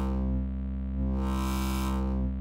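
A held low note from the Serum software synthesizer, its tone brightening and dulling in slow sweeps as a knob on an Akai MPD218 controller, linked to a Serum parameter, is turned. It starts bright, turns duller about half a second in, and brightens again from about a second in.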